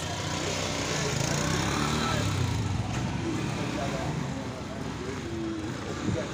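Small motorcycle engine running steadily, with faint voices in the background.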